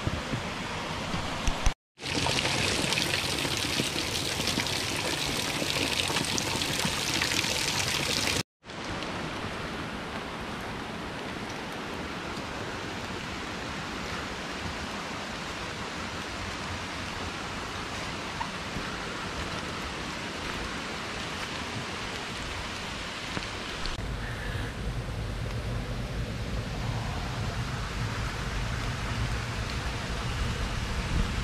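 Water running: a thin waterfall trickling and splashing down a wet stone wall onto rocks, then a woodland stream flowing steadily over boulders, with two sudden breaks in the sound where the clips change. Near the end a low rumble joins the water.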